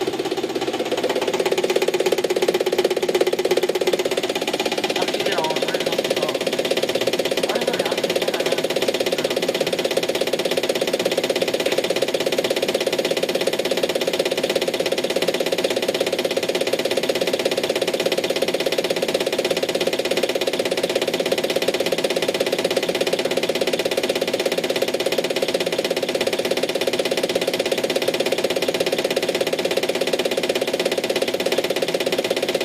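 Common-rail diesel injector test bench running steadily at idle-injection settings (600 µs pulses at 250 bar): the high-pressure pump drive whirring while a Hyundai Santa Fe injector fires in a fast, even ticking rhythm, spraying fuel into a measuring cylinder.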